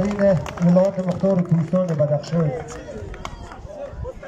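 A man speaking in a raised voice in short phrases for about two and a half seconds, then a quieter stretch of background noise.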